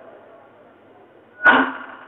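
A man preaching: a pause with his last word echoing away, then one short, loud spoken syllable about one and a half seconds in that rings on in the echo.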